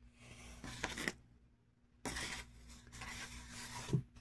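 Faint rubbing and scraping handling noise in two stretches, about a second long and then about two seconds long, with a low steady hum underneath.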